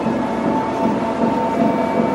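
Best Choice Products electric treadmill running empty at speed 7.5: the drive motor gives a steady whine over the rush of the moving belt.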